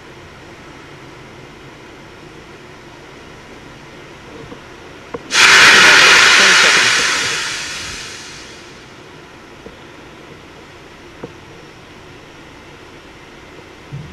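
Pad audio from a Falcon 9 in its final countdown: a steady low hiss, then about five seconds in a sudden loud hiss of pressurized gas venting that fades away over about three seconds.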